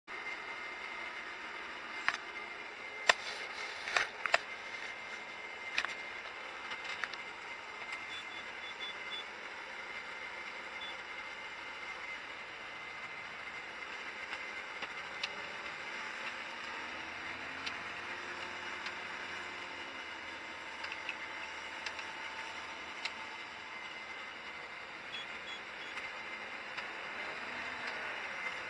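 Cab noise of a Holmer Terra Variant 600 self-propelled slurry applicator at work: steady running noise of the machine. Several sharp knocks come in the first few seconds, and a few short faint beeps come about eight seconds in.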